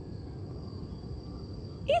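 Quiet outdoor background: a faint, steady high-pitched drone typical of insects over a low rumble.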